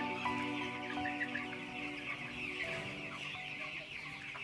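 A flock of chickens clucking and calling, with background music fading out over the first two seconds or so.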